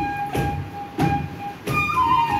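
Sipung, the Bodo bamboo flute, holding a long note that steps up to a higher note near the end, over kham drum strokes.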